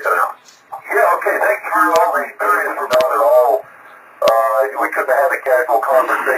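A voice coming through an amateur radio receiver, narrow and thin-sounding, in two stretches of talk with a short gap between and a few sharp clicks.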